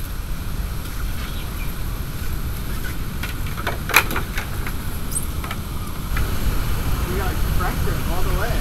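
Surfboards being lifted out of a pickup truck bed: scattered light knocks and clicks, with one sharp clack about halfway through, over a steady low rumble.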